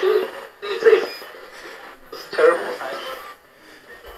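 Handheld ghost box sweeping through radio frequencies: about three short, chopped fragments of broadcast voice, with hiss between them.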